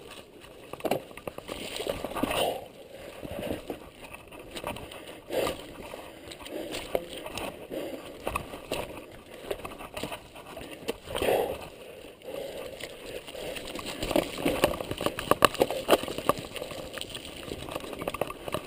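Mountain bike riding down a dirt singletrack: tyre noise on the dirt, with many irregular rattles and knocks from the bike over bumps and roots, and wind on the microphone. The rattling grows busier and louder near the end.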